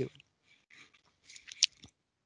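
Faint scattered crackles, then a sharp click near the end followed by a weaker one.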